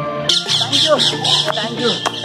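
Background music with a rapid, squawking, chattering call laid over it, starting about a third of a second in and pulsing about six times a second.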